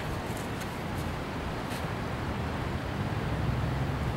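Steady outdoor background noise, heaviest in the low end, with a few faint clicks.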